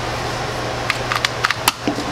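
A freshly lubricated 2x2 speed cube being turned by hand: a quick run of sharp plastic clicks about a second in, over a steady low hum.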